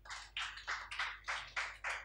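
Hands clapping in applause, about three claps a second.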